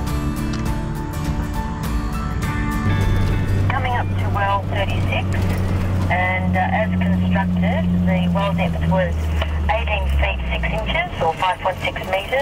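Background music for the first three seconds, then the steady drone of a four-wheel drive's engine heard inside the cabin, with voices coming over the UHF CB radio, thin-sounding as through a small speaker.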